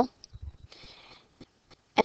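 A short pause in speech: a soft, faint intake of breath about a second in, with a few faint low knocks just before it.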